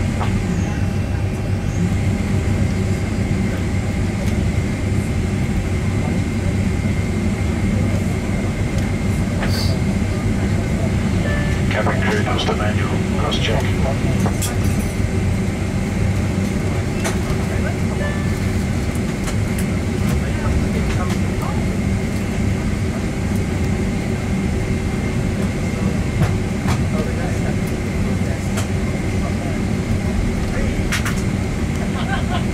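Steady cabin noise inside a Boeing 767 taxiing: a continuous low engine hum at idle with thin steady whine tones above it. Faint voices come in briefly around the middle.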